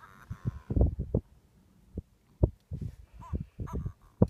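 A flock of black-faced sandgrouse giving short, low clucking calls in irregular clusters, often overlapping. A few higher, arched chirping notes come a little after three seconds in.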